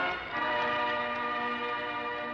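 Church bells ringing: a dense chord of many steady tones that sets in just after the start and holds.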